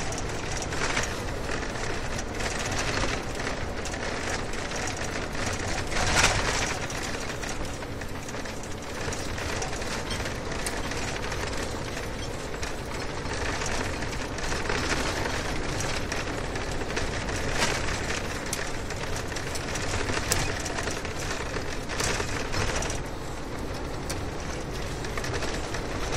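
Steady noise of a vehicle moving along a road: tyre and wind noise, with a few brief louder swells.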